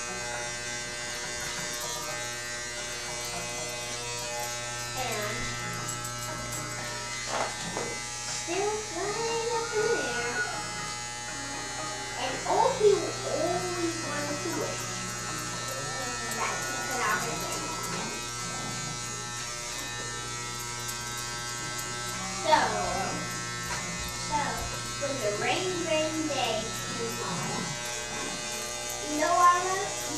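Corded electric hair clippers running with a steady buzz while cutting a boy's hair at the back and sides of his head.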